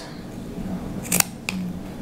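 Fabric scissors trimming a cotton seam allowance: two short, sharp snips about a second in, half a second apart.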